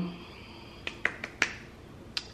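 A few short, sharp clicks in a pause between speech, about four within half a second, over quiet room tone.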